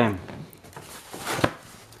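A painting and its hardboard frame backing being handled: light rustling, then one sharp knock about a second and a half in as the board is set down.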